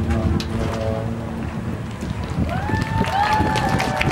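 Live stage-performance sound heard from the audience: a voice early on, then a long held note that slides up and then levels off from a little past halfway, over a busy low-pitched thumping background.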